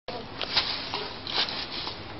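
Wooden parts of an old piano scraping and rubbing, with a few short knocks.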